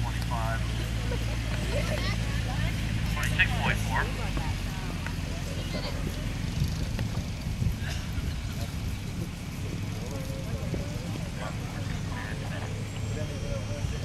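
Indistinct chatter of spectators' voices outdoors over a steady low motor hum, which is strongest in the first few seconds and then fades.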